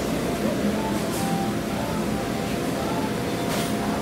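Steady hum of a ventilation fan filling the dining room, with faint background voices underneath.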